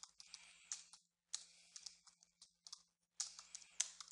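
Computer keyboard being typed on, faintly: runs of quick keystrokes in three bursts separated by short pauses, about a second in and about three seconds in.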